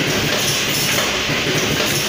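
Automatic centre-spout sachet packing machine running, a steady loud mechanical clatter with repeated clacks.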